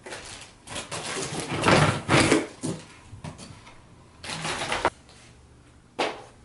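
Packaging rustling and plastic parts knocking as a cardboard toy box is unpacked by hand, in irregular bursts that are loudest about two seconds in and again near the end.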